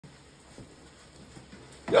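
Quiet kitchen with a couple of faint light taps, then a man's voice starting loudly just before the end.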